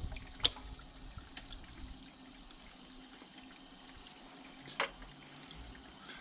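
Mains power being switched into a home-built EV charging circuit: a sharp click about half a second in and another near the end as the plug goes in and the charging relays and contactors switch through. Under them runs a faint steady hum and a thin high whine.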